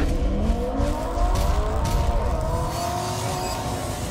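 Car engine revving as an intro sound effect: its pitch climbs over the first second or two, then holds high and eases slightly near the end.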